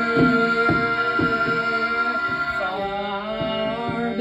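Live music from a violin and saxophone-with-electronics duo: a steady pulse of short struck notes about twice a second under a held high tone. A little under three seconds in, a wavering, sliding melodic line comes in over it.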